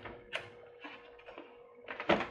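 A Teflon sheet clamped in a closed heat press being tugged, giving a few brief faint rustles over a faint steady hum. The sheet holds fast, the sign that the press's pressure is high enough in the dollar-bill test.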